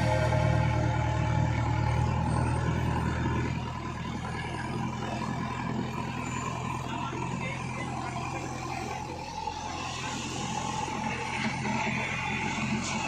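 A JCB 3DX backhoe loader's diesel engine running steadily under load while it drags a crashed SUV. Background music fades out during the first few seconds.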